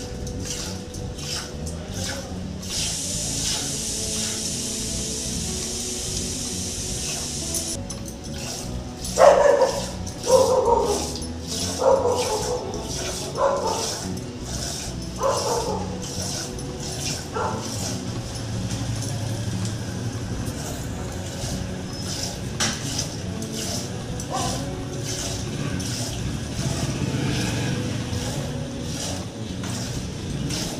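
Milk squirting in a steady rhythm into a steel pot as a cow is milked by hand. A dog barks about six times near the middle.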